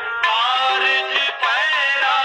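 Gurbani kirtan: a voice singing a shabad in long, gliding melodic lines over held harmonium notes.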